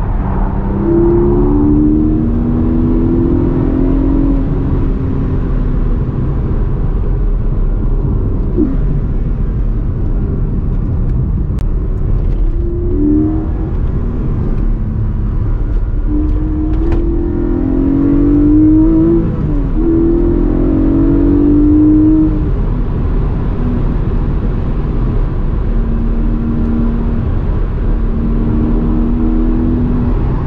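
Porsche 718 Cayman GTS 4.0's naturally aspirated 4.0-litre flat-six pulling hard, its note climbing through the revs and dropping back at each gear change, several times over. A steady low rumble of road noise lies underneath.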